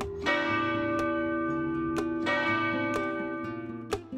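Cathedral tower bells ringing out the time: two strokes about two seconds apart, each ringing on and slowly fading.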